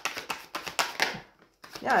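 Tarot cards being shuffled by hand: a quick run of soft card slaps and flicks through the first second or so, then a pause.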